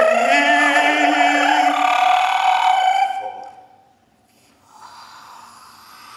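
Human voices holding a long sung note that stops about three seconds in, leaving a much quieter stretch with only a faint hazy sound.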